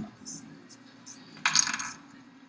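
Small hard electronic parts clinking as they are handled on a workbench: a few light ticks, then a brief rattle about one and a half seconds in.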